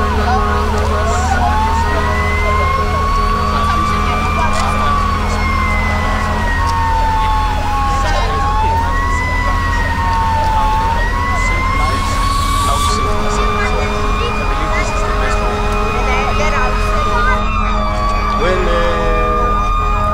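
Siren wailing, its pitch rising and falling slowly several times, over a steady low drone.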